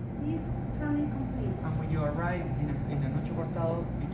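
A voice talking in short, indistinct bits over a steady low hum in the room.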